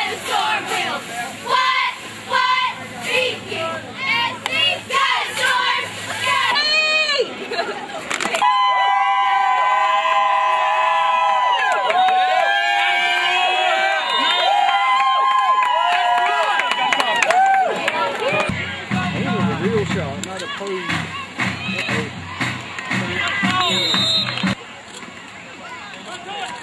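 High school crowd cheering and chanting. Many voices shout in rhythmic bursts at first, then hold long shouts together for several seconds, with a low repeating beat coming in about two-thirds of the way through.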